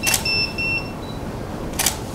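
Camera shutter clicking twice, about a second and a half apart, with a short double electronic beep from the camera between the clicks.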